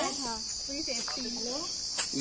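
A steady, high-pitched insect drone, with faint voices talking underneath.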